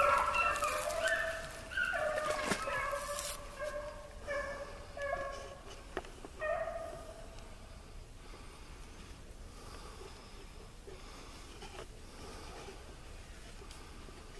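Rabbit hounds baying on a rabbit's scent: a quick run of short, high-pitched bays that grows fainter and dies away about halfway through.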